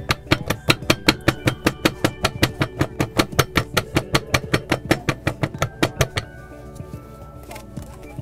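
A PCCA manual capsule-filling machine being tapped rapidly and evenly, about five or six sharp knocks a second for some six seconds, then stopping. The tapping settles the compounding powder down into the capsule bodies.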